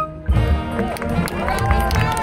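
Marching band playing its field show: after a brief break right at the start, the music comes back in with low drum hits and sliding pitches.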